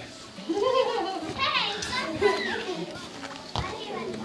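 Several young children's voices shouting and squealing together, high and rising and falling in pitch, followed by a single knock near the end.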